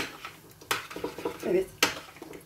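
A metal spoon scraping and clinking against a ceramic plate while stirring thick strained yogurt, with three sharp clinks.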